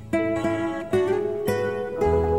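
Instrumental music: an acoustic guitar plucking single notes, four of them in two seconds, each ringing out. A deep bass note comes in at the very end.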